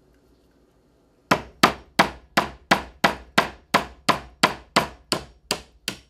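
A hammer tapping the handle of a Phillips screwdriver to drive it through the soft eye of a coconut, punching a hole to drain the milk. About fourteen even blows, roughly three a second, begin a little over a second in, each with a short ring.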